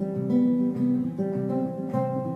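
Acoustic guitar playing a slow folk-ballad accompaniment on its own, plucked notes and chords changing about every half second.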